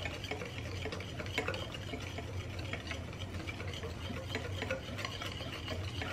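Wire whisk beating egg yolks in a glass bowl, a steady stream of quick light clicks as the whisk hits the glass. The yolks are being tempered, whisked without pause while hot milk is drizzled in so they don't scramble.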